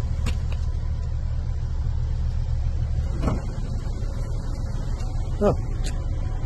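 A vehicle engine idling: a steady low rumble with no change in pitch.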